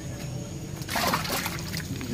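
Water sloshing and splashing in a brief burst about a second in, over a steady low hum.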